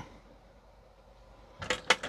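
A small glass paint jar set down on a clear acrylic display rack: after a quiet stretch, a few sharp clicks and knocks come near the end.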